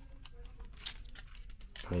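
Faint handling sounds of a small action camera being worked out of its plastic frame mount: a few light plastic clicks and rubbing.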